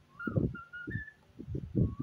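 Cockatiel whistling a run of short notes, a couple of them gliding up and then down, over a loud, choppy low mumbling.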